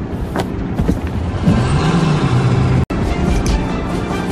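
Car engine running and revving hard under dramatic background music. The sound cuts out for an instant about three seconds in.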